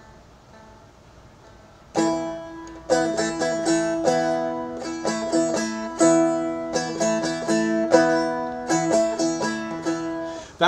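Seagull Merlin four-string strummed rhythmically, starting about two seconds in. The pointer finger lifts off and drops back on so quickly that the chord flickers between A and E, a fast up-and-down ripple in the chord.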